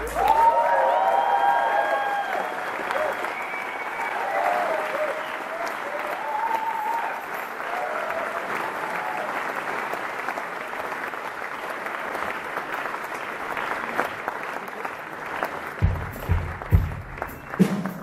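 Concert audience applauding after a song ends, with cheers and whistles in the first few seconds. Near the end a drum kit comes in with kick drum beats as the next song starts.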